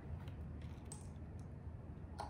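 A few faint, light clicks and taps of small objects being handled, spread unevenly, over a low steady hum.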